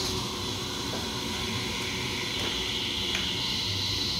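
Idle Peavey guitar amplifier hissing and humming steadily, with a few faint clicks.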